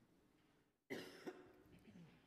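Faint room tone, then a sudden cough about a second in, followed by faint talk away from the microphones.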